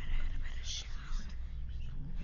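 A whispered voice with hissing sibilants, over a low, steady drone.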